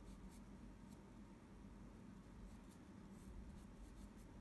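Faint scratching of a graphite pencil sketching on Arches watercolour paper, in several short strokes.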